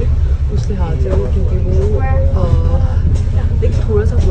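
Steady low rumble of a bus engine and road noise, heard from inside the passenger cabin, under a woman's talking.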